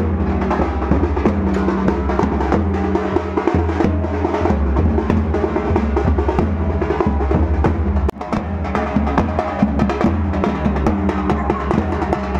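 Procession drumming: a large double-headed bass drum worn on a strap and other drums beaten continuously, dense and loud, with a brief break about eight seconds in.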